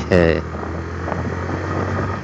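Motorcycle engine running at an even speed while riding, a steady low hum.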